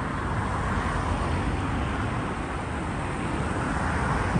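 City street traffic noise: a steady wash of passing road vehicles.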